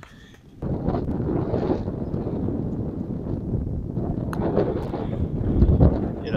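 Wind buffeting the microphone: a loud, steady low rumble that starts suddenly about half a second in.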